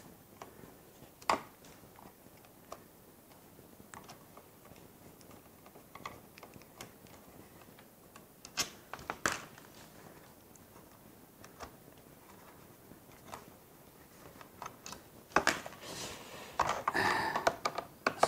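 Scattered small clicks and taps as a plastic radio-control transmitter case is handled and its screws worked with a screwdriver, with a denser run of clattering in the last few seconds.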